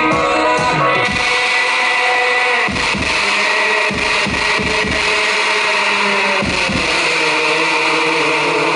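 Live band in a small club: sung, pitched music gives way about a second in to a loud, dense wall of distorted noise, with irregular low drum thumps from about the middle onward.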